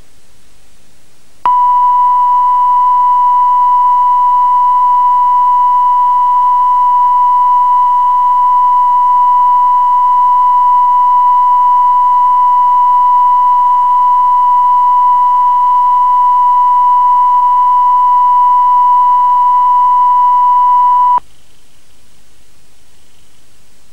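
Steady 1 kHz reference test tone of the kind laid down with colour bars on a videotape, starting about a second and a half in and cutting off suddenly near the end. Faint tape hiss is heard before and after it.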